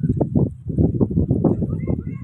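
Footsteps on soft beach sand close to the microphone, a quick, irregular run of dull thuds.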